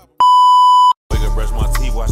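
A loud, steady test-tone beep of the kind played with television colour bars, lasting under a second and cutting off sharply. After a brief silence, a hip hop track with a heavy bass beat starts about a second in.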